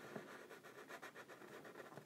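Near silence with faint, irregular scratching of a marker tip drawing on paper.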